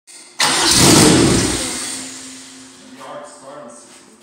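Turbocharged Honda H23 VTEC engine in a drag-built Civic starting up with a sudden loud burst about half a second in. The sound then falls away over the next two seconds to a much quieter, steady level.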